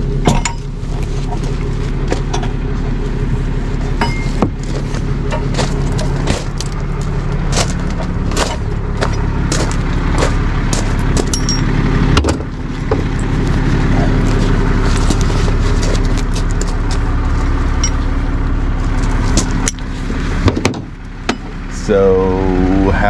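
Tow truck engine idling steadily, with frequent metallic clinks and clanks of tow chains and hooks being handled as a car is hooked up for towing.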